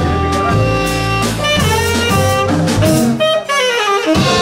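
Live jazz: a saxophone plays a melodic line over piano, upright bass and drums, ending in a quick descending run of notes.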